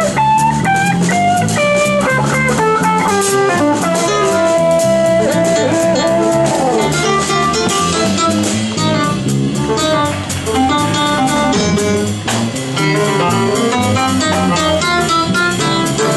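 Live jazz-funk band playing: an electric guitar line with a long bent note over drum kit, bass and a Nord Wave keyboard synth.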